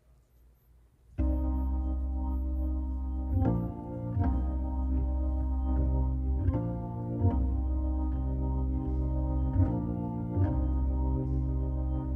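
Organ playing a slow introduction of held chords that changes chord every second or so, starting about a second in.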